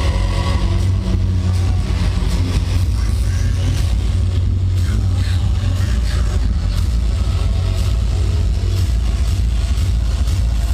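Industrial hardcore played loud over a club sound system and heard from within the crowd: heavy, distorted bass that runs without a break, with a dense, noisy layer above it.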